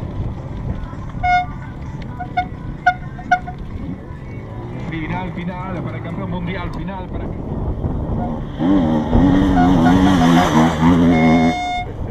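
Enduro motorcycles racing past on a dirt special test, their engines getting louder for the last few seconds, with several short horn toots early on and a longer held toot near the end, over spectators' voices.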